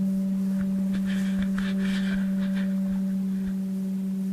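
Kyotaku, the end-blown Zen bamboo flute, holding one long, steady low note. Breathy air noise rises over the tone from about one to two and a half seconds in.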